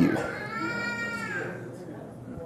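A single drawn-out, high-pitched vocal sound of about a second and a half, its pitch arching up and then down, much quieter than the preaching.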